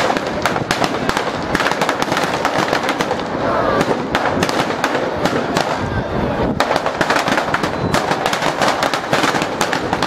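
Firecrackers packed into a New Year's Eve effigy going off as it burns: a continuous, rapid crackle of sharp bangs with no pause.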